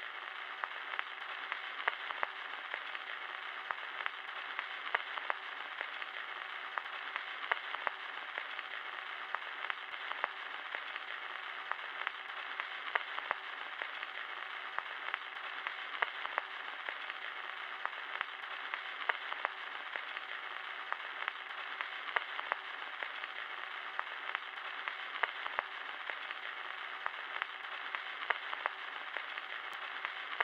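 Steady, thin hiss peppered with irregular crackles and pops: the surface noise of an aged recording, like a worn record or old film soundtrack.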